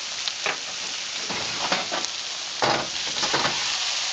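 Onions and mushrooms sizzling steadily in hot oil in a wok, with louder flare-ups of sizzle and scraping as crumbled tofu is tipped in and stirred, the loudest a little past halfway.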